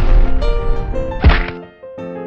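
Two loud, heavy impact sound effects over light piano music. The first hits at the start and trails off. The second, sharper one comes just over a second later.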